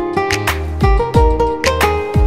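Instrumental break in a Bengali pop song: a plucked-string melody over a beat with deep, booming kick drums that hit twice.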